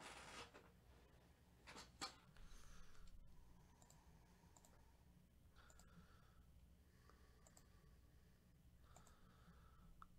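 Near silence: low room hum with a few faint clicks and rustles, the loudest a single sharp click about two seconds in.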